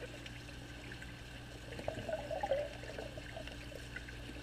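Faint underwater swimming-pool sound picked up by a submerged camera: a steady low hum, with a brief burst of bubbling about two seconds in.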